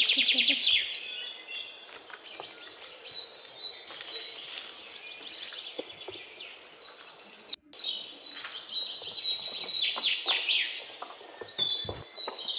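Small birds chirping and singing, with quick high trills. The loudest trill comes at the very start, and the calls break off for an instant a little past halfway.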